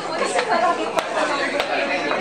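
Many people chatting at once, overlapping conversation of a crowd, with a couple of sharp clicks around the middle.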